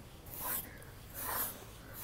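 Scratching strokes through a Highland bull's coarse, shaggy coat: soft rasping rubs repeating a little under a second apart.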